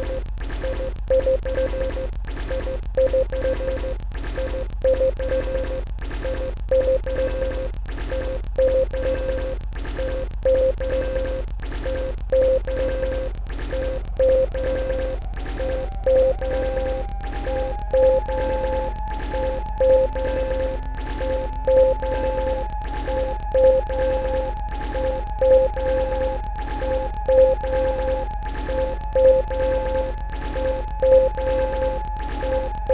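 Electronic music played live: a drum-machine beat sequenced on an Elektron Digitakt, with a repeating synth note. About halfway through a second held synth tone glides up in pitch, then holds.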